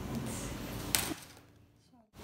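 Faint handling noise of hands squeezing a soft foam squishy toy, with one sharp click about a second in, after which the sound drops to near silence.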